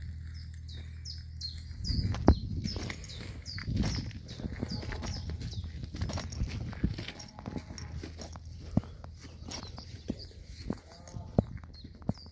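Small birds chirping over and over, with the knocks and scuffs of footsteps and a handheld phone as someone walks. A low steady hum sits under the first couple of seconds.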